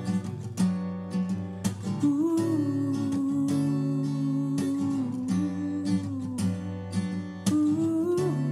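Unamplified Yamaha steel-string acoustic guitar strummed in a steady rhythm, with a wordless sung note held over it for several seconds, wavering slightly in pitch.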